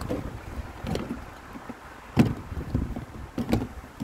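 Wind and handling noise on a phone microphone held against a fabric hoodie, with rustling and several sharp bumps, the loudest about two seconds in and another near the end.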